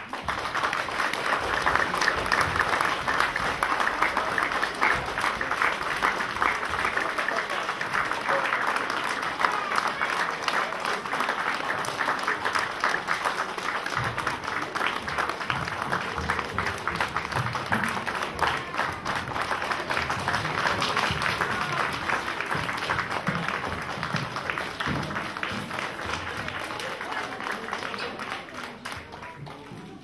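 Audience applauding: a dense crowd of clapping hands that starts abruptly, holds steady and gradually dies away near the end.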